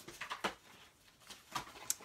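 Faint paper handling: a few soft ticks and rustles as a glued paper liner is pressed and centred inside an envelope.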